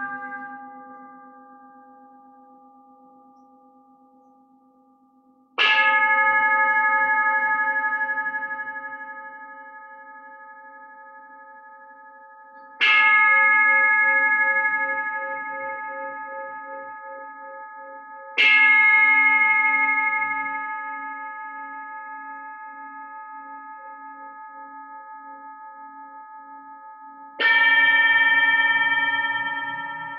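Metal singing bowls struck with a mallet, four strikes several seconds apart, each left to ring out long with a slow wavering pulse in its hum. The first three strikes ring at the same pitches. The last, near the end, is a different bowl with a higher ring. A previous strike is dying away at the start.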